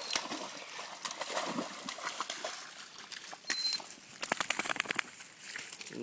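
Water splashing and sloshing as a dog wades and swims in a shallow creek, with a brief high squeak about three and a half seconds in. About four seconds in comes a quick run of sharp flapping strokes, a duck flushing off the water.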